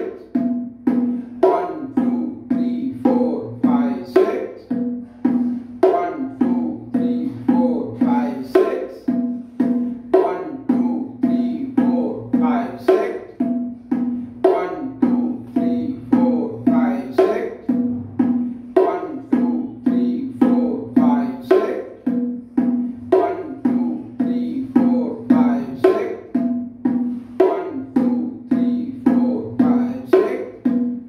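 Bongos played with bare hands: a steady, evenly repeating rhythm of sharp strokes, with a ringing drum tone under them.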